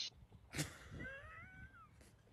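A pet's faint, thin whining cry about a second in, rising in pitch, holding, then falling away, after a soft click.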